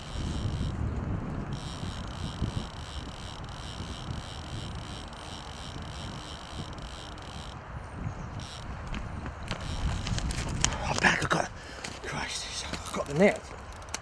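Wind rumbling on an unattended microphone outdoors, under a steady hiss. There are bursts of rustling about ten seconds in, and a man's voice near the end.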